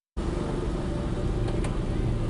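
Audio cuts in after a moment of dead silence, then steady outdoor background noise with a low rumble, mostly road traffic, picked up by a live field microphone.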